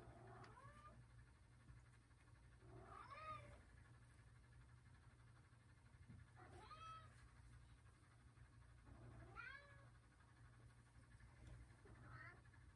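A cat meowing faintly in the background: four drawn-out meows roughly three seconds apart, each rising and then falling in pitch.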